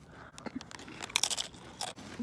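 Crunchy Cheetos being bitten and chewed close to the microphone: a string of irregular, short crunches.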